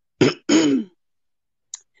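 A person clearing their throat in two short rasps, then a faint click near the end.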